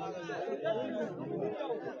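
Crowd chatter: many men talking over one another at once, with no single voice standing out.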